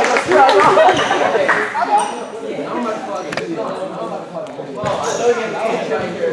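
Basketball game sounds echoing in a large gym: a ball bouncing on the court, with a sharp knock a little over three seconds in and brief high sneaker squeaks, under players' voices.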